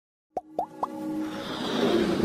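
Intro sound effects for an animated logo: three quick pops about a quarter second apart, each rising in pitch, then a swelling musical build.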